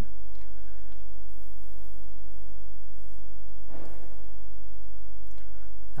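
Steady electrical mains hum throughout, with a brief scraping rustle about four seconds in as the stainless steel electric kettle is set onto its power base.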